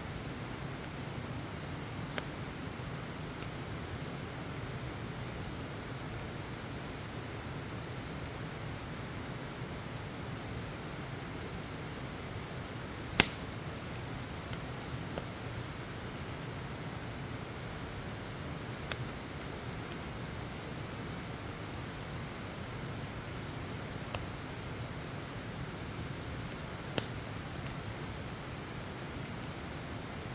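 Wood fire burning in a metal fire pit: a steady low rush with a few sharp pops and cracks from the burning logs, the loudest about halfway through.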